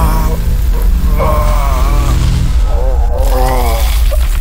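Dark ambient music: a deep, steady drone with wavering, moaning voice-like tones rising and falling over it in two long phrases, above a faint hiss.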